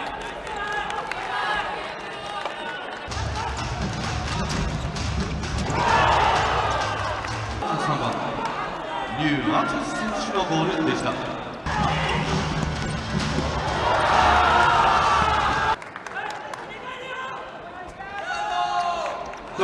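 Futsal ball being kicked and bouncing on an indoor hardwood court, with a commentator's excited calls and crowd noise in a large hall as goals are scored.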